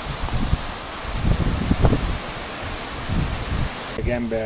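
Wind gusting on the camera microphone, giving irregular low rumbles over a steady hiss of wind through leaves.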